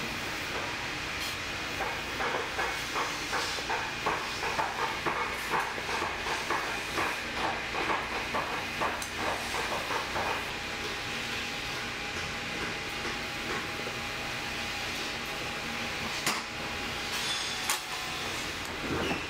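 Knife blade sawing through old, cracked boot leather in quick, even strokes, about two or three a second, for some eight seconds. A steady hiss runs underneath, and the cutting stops about halfway through.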